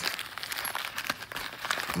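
Clear plastic packaging crinkling as a wrapped compressed-gauze packet is handled and pulled out of a nylon med-kit pouch: a run of small, irregular crackles.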